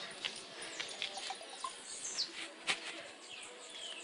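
Birds chirping with short falling whistled calls, a few seconds apart, mixed with a few small clicks.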